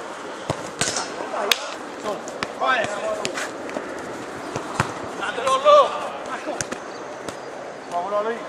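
Futsal ball being kicked during play: a series of sharp, scattered knocks, with short shouts from players about three seconds in and again near six seconds.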